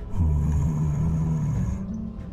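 A low, rough growl lasting about a second and a half, then cutting off.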